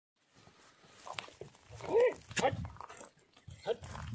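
A few short, separate vocal calls, the loudest about halfway through, over low rumbling.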